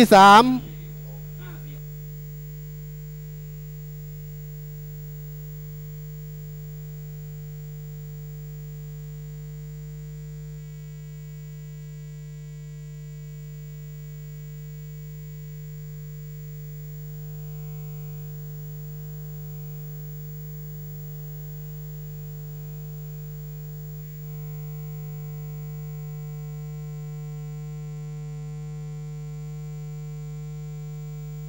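Steady electrical mains hum on the recording's audio track: a low buzz with a few faint steady tones above it. It steps slightly louder near the end.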